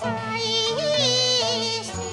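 A woman singing a long, drawn-out Cantonese opera vocal line with a wavering vibrato over instrumental accompaniment. The line rises briefly about a second in, then slowly falls.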